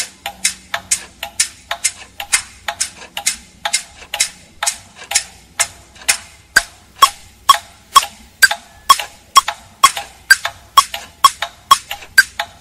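Clocks and metronomes ticking out of step with one another in a dense, steady run of sharp clicks, about three to four a second, loud and soft ticks alternating, some with a short ringing ping.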